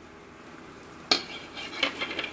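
Stiff plastic deco mesh rustling and crinkling as a bundle is worked onto a wire wreath ring. A sharp click about a second in starts the rustling.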